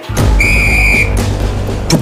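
A single whistle blast, one steady high tone held for about half a second, over the start of music with a heavy, deep bass.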